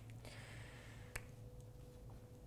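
Quiet room tone with a steady low hum. A soft brief hiss comes early, and one sharp click sounds just over a second in.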